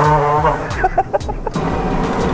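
A man laughing in short cackles over the steady rolling rumble of drift-trike wheels on a smooth store floor.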